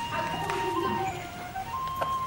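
Background music: a simple electronic melody of long held notes that step from one pitch to the next.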